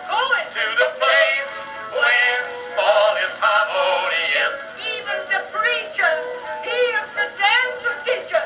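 An Edison Blue Amberol cylinder playing on an Edison cylinder phonograph: an early acoustic recording of male singing with accompaniment, with wavering vibrato. It sounds thin, with almost no bass.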